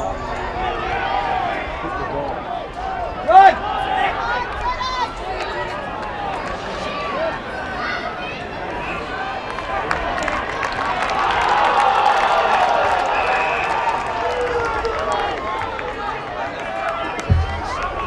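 Football crowd and players shouting and calling out over open-air crowd noise. There is one loud, sharp shout a few seconds in, and the crowd noise swells for a few seconds in the middle as a tackle is made.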